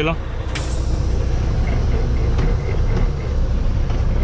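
Semi truck's diesel engine running steadily at low speed, a deep rumble heard from inside the cab. About half a second in, a hiss of air starts and carries on under it.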